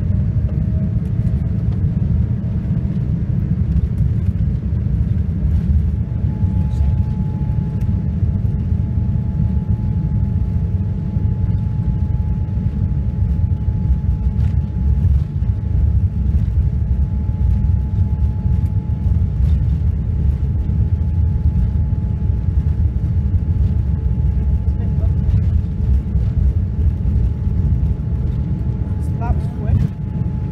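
Cabin noise of a Boeing 787-9 airliner rolling on the ground: a steady, loud low rumble of engines and airframe. A faint rising whine comes over the first couple of seconds, and a thin steady tone joins about six seconds in.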